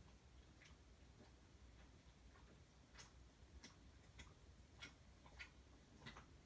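Near silence with faint ticks, fairly evenly spaced at a little more than one a second apart.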